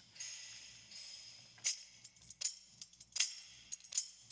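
Percussion from the song's mix playing back quietly: sharp clap hits about every three-quarters of a second, the first trailed by a long reverb wash.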